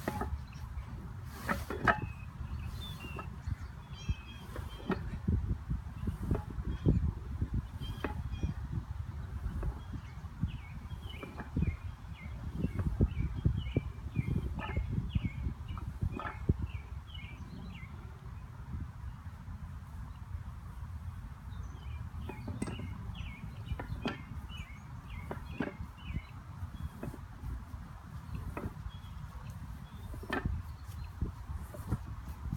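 Wind on the microphone with scattered irregular knocks, and a small bird chirping in quick series in two stretches, about a third of the way in and again past two-thirds.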